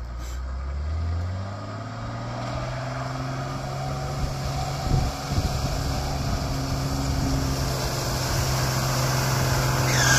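Old Toyota Land Cruiser four-wheel drive driving slowly through a muddy puddle towards the microphone, its engine note steady and growing louder as it comes closer. Water splashes from its wheels around the middle.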